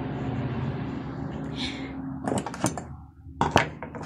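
Hands handling a glued strip of satin ribbon over a wooden table: a steady rustling hiss for about two seconds, then several short clicks and light knocks.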